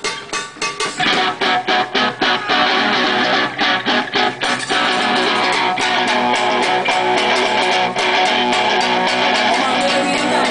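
Live blues-rock band playing, with electric guitar to the fore over bass. The music gets louder about a second in, with choppy rhythmic strokes that give way to a steady full sound about halfway through.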